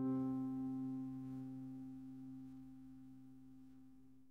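The final strummed acoustic guitar chord of a song ringing out and fading away steadily to nothing, ending the song.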